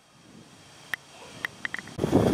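Quiet outdoor background noise with a few short, light clicks, one about a second in and a quick cluster near the end.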